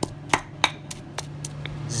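Stone pestle pounding a chili, garlic and galangal paste in a stone mortar: about six sharp knocks, roughly three a second.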